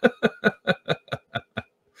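A man laughing: a run of about eight short, breathy chuckles that slow and fade out.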